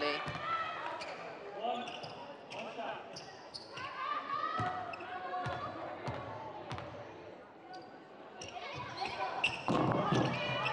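A basketball bouncing on a hardwood court, several sharp single bounces with a short echo in a near-empty arena: a free-throw shooter dribbling before her shot. Faint voices of players calling out are heard behind it.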